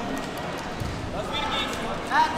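Voices in a busy sports hall, with a raised shout rising in pitch near the end, and a dull thud about a second in from wrestlers' feet and bodies on the mat.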